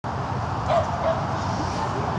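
A dog barking: one short bark about two-thirds of a second in and a smaller one just after a second, over steady low background noise.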